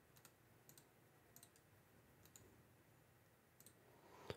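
Near silence broken by a handful of faint computer clicks, some in quick pairs, from a mouse and keyboard being used to copy and paste text.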